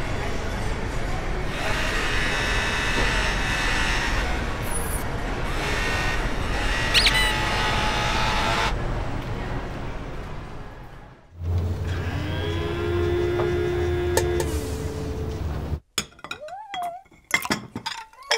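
Designed soundtrack of music and layered sound effects. A dense, busy texture with clinks and a brief high ring about seven seconds in fades out near eleven seconds. Then a low hum under a held steady tone runs until about sixteen seconds, followed by short sounds gliding up and down in pitch.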